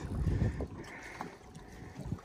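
Low rumbling wind noise on the microphone with water moving against a boat's hull, stronger for about the first second and then fading.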